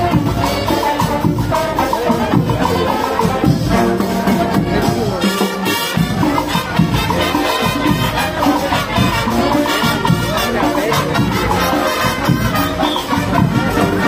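Marching band playing, a brass melody over a steady drum beat.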